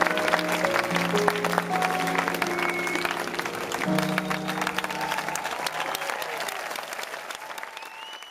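A live band's closing chords held and dying away under crowd applause and cheering; the whole sound fades out toward the end.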